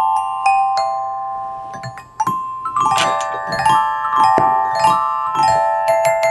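Hanging steel open-end wrenches struck with a mallet and played like a xylophone, each note ringing on. A few single notes, then a quick run of notes about two seconds in, followed by a regular string of strikes, two or three a second.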